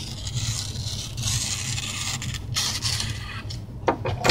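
A sheet of paper wiped along a steel knife blade to clean it: a long rustling scrape, then a second, shorter one near the end, over a steady low hum.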